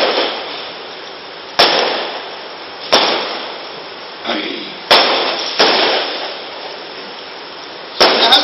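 Paper pages of a book being handled and turned: four sudden rustles, each fading over about a second, over a steady hiss.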